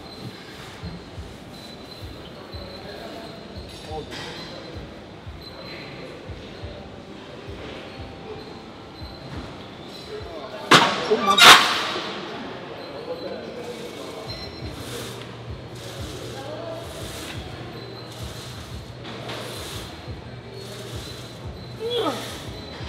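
Two loud metal clanks about half a second apart, roughly eleven seconds in, from a plate-loaded leg press as its sled is set going. They sit over gym background noise, and a steady low hum starts a few seconds later.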